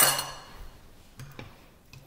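A kitchen utensil clinking against cookware: one sharp metallic clink right at the start that rings briefly and fades, followed by a few light, faint clicks.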